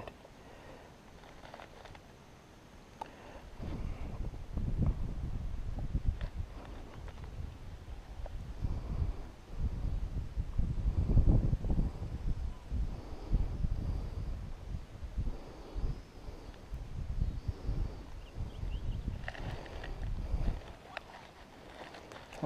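Wind buffeting the microphone: an uneven low rumble that starts about three seconds in, swells and fades in gusts, and dies away near the end.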